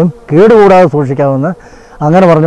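A man speaking in a short run of phrases that stops about three-quarters of the way through, leaving a brief lull.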